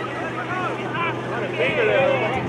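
Several voices shouting and calling out at once across a soccer field, raised and overlapping, louder near the end.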